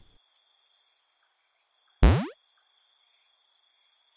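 Steady chirping of crickets as a background bed. About two seconds in comes one sudden loud hit whose pitch drops swiftly from high to low, a short falling sweep lasting about a third of a second.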